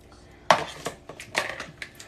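A metal spring-handled scoop and a spatula clattering in a mixing bowl. A sharp knock comes about half a second in, then several lighter clinks and scrapes.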